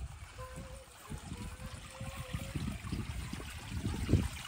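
Water from a garden hose running into an inflatable pool, a light trickling splash, with a faint wavering tone heard over it through the first couple of seconds.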